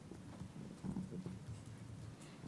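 Faint, scattered low thumps and rustles of a handheld microphone being handled and people moving about in a quiet room, the loudest cluster about a second in.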